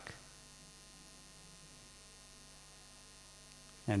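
Faint steady electrical mains hum in the microphone and sound system, a low even drone with no speech over it. A man's voice trails off at the start and comes back with one word at the very end.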